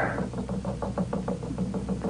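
Radio music bed: a quick, even ticking beat of about eight knocks a second over steady held low notes.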